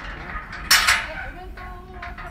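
A loud, sudden clatter of hard objects, metallic-sounding, about two-thirds of a second in, dying away within half a second.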